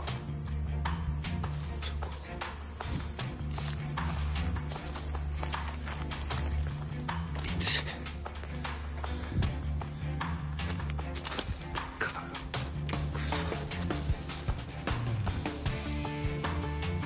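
Steady high-pitched trilling of crickets in a night insect chorus, with scattered footsteps and camera-handling knocks, over low background music.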